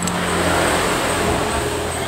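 Road traffic going by: a steady rushing noise that swells through the middle and eases toward the end.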